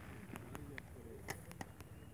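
Faint outdoor background with a few light clicks as an assault rifle is handled and raised to the shoulder, with faint bird calls.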